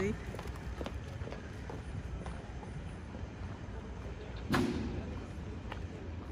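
City street background: a steady low rumble of distant traffic with a few faint clicks. A short snatch of a passing voice comes about four and a half seconds in.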